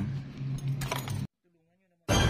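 Light metallic clicks and scraping of a metal nail tool working at a toenail over a steady low hum; the sound cuts off abruptly about a second and a quarter in.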